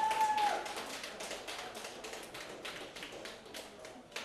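Scattered hand clapping from a small audience, thinning out and getting quieter, with a brief pitched cheer from the crowd at the very start.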